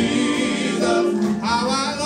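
Male gospel vocal group singing in close harmony, voices holding sustained notes; about a second and a half in, one voice with a wavering vibrato rises above the others.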